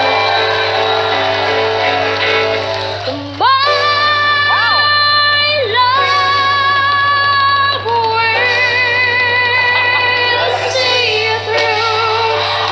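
A young boy's unbroken solo voice sings a ballad over band accompaniment, holding long high notes with vibrato. About three and a half seconds in he slides sharply up into a long sustained high note, and he holds two more long notes after it.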